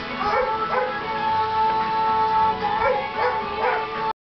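Background music with held tones, with a dog yipping and whimpering over it several times.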